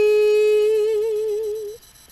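A woman singing unaccompanied, holding the last note of "dream" steadily and then with vibrato, until it stops about two-thirds of the way through.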